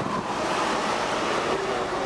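Steady engine and road noise heard from inside a car's cabin as it crawls along in heavy traffic.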